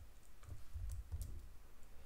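A few faint computer keyboard clicks, spread through the moment, each with a soft low thud beneath it.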